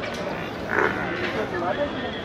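Indistinct background chatter of people's voices in a busy livestock yard, with a brief louder call a little under a second in.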